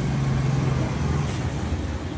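A road vehicle's engine running on the street close by: a low steady hum that drops in pitch a little past halfway.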